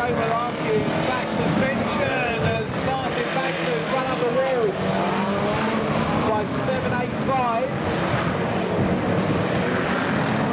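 Engines of several banger-racing cars revving hard on a shale oval, their pitches rising and falling over one another as the cars race past.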